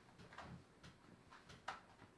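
Near silence with a few faint, sharp clicks, the loudest about a second and a half in.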